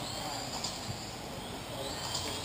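Radio-controlled on-road racing cars running around an indoor track: a steady hiss of motors and tyres, with faint rising whines as cars pass close by.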